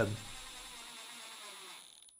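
Cordless Milwaukee M12 impact driver turning a screw into plywood: a faint steady whir that fades out near the end.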